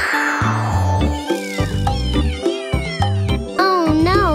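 Children's-song backing music with a steady beat, with cartoon kitten meows sung over it from about a second in. A whoosh dies away at the start.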